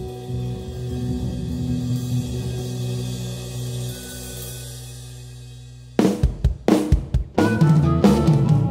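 Acoustic blues band: low bass-guitar notes hold and fade over the first few seconds. About six seconds in, a drum-kit fill of sharp snare and cymbal hits brings the band back in, with harmonica returning near the end.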